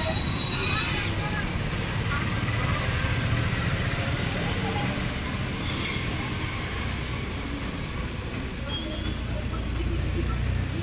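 Steady low rumble of road traffic with indistinct voices in the background.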